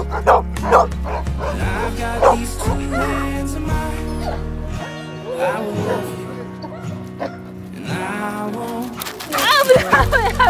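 Dogs barking in quick short barks over background pop music, the barks clearest in the first second or so.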